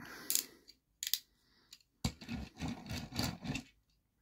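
Ratcheting plastic joints of a transforming dinosaur robot toy clicking as it is folded into vehicle mode: a couple of separate clicks, then a quick run of clicks about halfway through.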